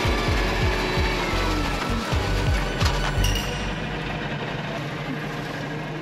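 Background music with a low beat fades out over the first few seconds, leaving a tractor engine running steadily with machinery noise during the adzuki bean harvest, heard from the cab.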